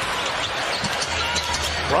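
A basketball being dribbled on a hardwood court over the steady background noise of an arena crowd.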